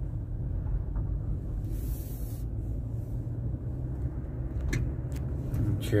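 Steady low rumble of a car's engine and tyres heard from inside the cabin while driving, with a brief hiss about two seconds in and a few faint clicks near the end.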